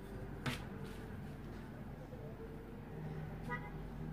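A clear plastic ruler handled and laid down on pattern paper, with one sharp tap about half a second in and a few faint ticks. Near the end comes a brief toot, like a distant car horn, over a low steady background hum.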